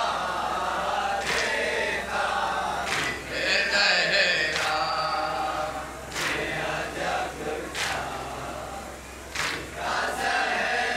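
A group of men chanting an Urdu noha lament in unison, with sharp strikes about every second and a half that match rhythmic chest-beating (matam).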